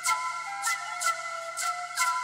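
Live music: a small wooden end-blown flute plays held notes over an electronic backing. The backing has a low drone and sharp percussive hits, about two to three a second in an uneven rhythm.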